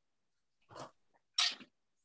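Near silence broken by two short breathy puffs from a person: a faint one just under a second in and a louder one about a second and a half in.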